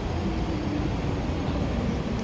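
Steady low rumble of city traffic, with a faint hum over it.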